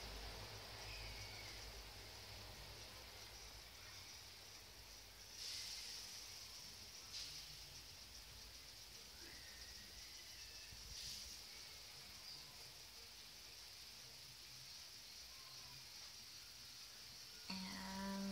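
Near silence: a faint steady high hiss over a low background rumble, with a few brief soft swells of noise in the middle.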